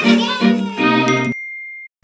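Short musical logo jingle: a few bright pitched notes for about a second, then a single high ding that rings on and fades out just before the end.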